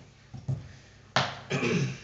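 A man clearing his throat before singing: a couple of faint low thumps, then a sharp cough about a second in, followed by a short voiced throat-clearing rasp.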